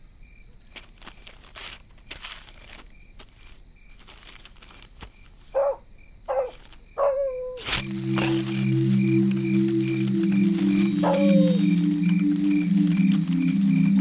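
Night insect chorus: crickets trilling in a steady high band, with a faint chirp pulsing about twice a second. The first half is quieter, with scattered faint clicks and a few short falling calls. About eight seconds in, a sharp click marks a sudden rise in the chorus, and a sustained low music drone comes in under it and grows louder.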